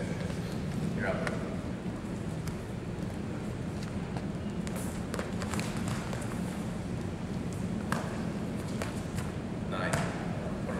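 Steady low hum of a gymnasium with faint, indistinct voices, and light shuffling and a few sharp clicks and thuds from two wrestlers grappling on a mat, the clearest about five and eight seconds in.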